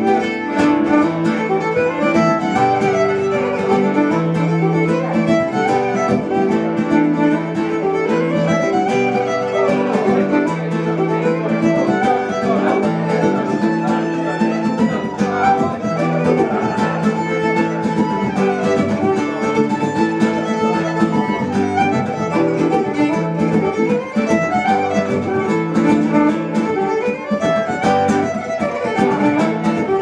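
A fiddle and an acoustic guitar play a lively Irish jig together. The bowed fiddle carries the running melody over the guitar's strummed chord accompaniment, without a break.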